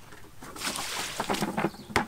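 Water poured out of a red plastic bucket onto grass, splashing for about a second, followed by a sharp knock at the end.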